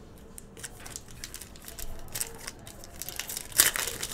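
Plastic-foil trading-card pack wrapper crinkling and tearing as the pack is handled and opened, in a cluster of short crackles that gets louder near the end.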